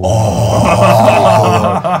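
Men's voices exclaiming a loud, drawn-out 'ooh' of astonishment together, with no words.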